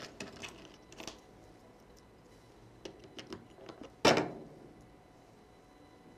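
Small hand-held craft pieces being handled on a desk: scattered light clicks and taps, with one louder knock a little after four seconds in.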